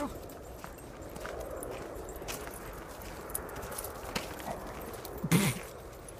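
Footsteps crunching on a gravel path, with scattered irregular steps. A brief loud call about five seconds in is the loudest sound.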